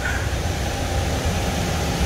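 Steady running noise of a chilled food-packaging floor, with conveyor lines and cooling and ventilation units running: an even hiss over a low rumble.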